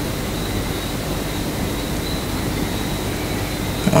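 Steady background noise: an even hiss with a low hum and a faint thin high tone held throughout, with no speech and no sudden sounds.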